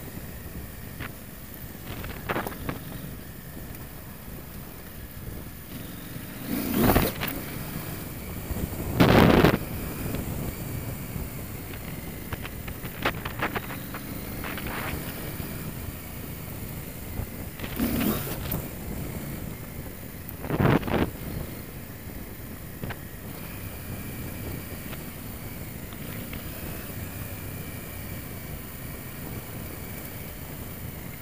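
KTM 890 Adventure R's parallel-twin engine running steadily under way, with wind noise on the microphone and four loud short bursts of rushing noise spread through.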